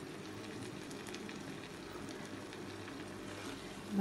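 Eggplant curry in a spiced oil paste sizzling faintly in a wok, a steady fine crackle with scattered small pops. The oil has separated out of the paste, the sign that the curry is cooked through.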